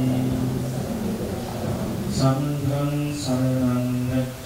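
A Buddhist monk chanting into a microphone in a low male voice. From about two seconds in he holds long, steady notes, two of them with a short break between.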